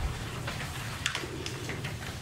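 Sheets of paper being lifted and shuffled, giving a few faint, short rustles over a steady low room hum.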